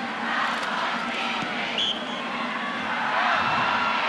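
Stadium crowd noise, a steady din of many voices that swells a little about three seconds in, with a brief faint high tone near the middle.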